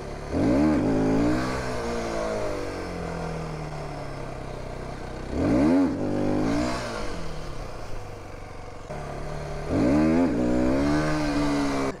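Aprilia motorcycle engine running under way and revved hard three times, about a second in, near six seconds and near ten seconds, each time rising sharply and falling back: throttle bursts to lift the front wheel in wheelie attempts.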